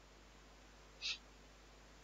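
Near silence: room tone, with one brief faint hiss about a second in.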